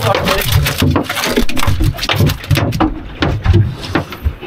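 A pink snapper flapping on a metal checker-plate boat deck: a quick, irregular run of slaps and knocks.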